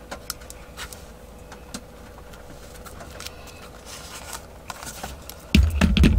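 A glue stick being rubbed over paper, with faint scrapes and small scattered clicks. About five and a half seconds in, louder bumping and rustling start as the glued paper envelope is picked up and handled.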